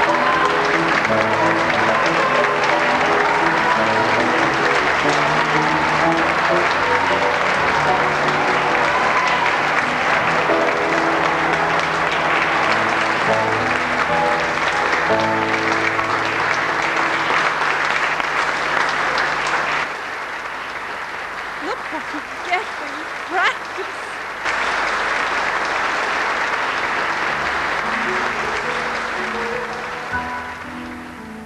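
Audience applause at the end of a cabaret song, with the small band playing on beneath it for the first part. The applause thins briefly about two-thirds through, with a few voices calling out, then swells again and fades away near the end.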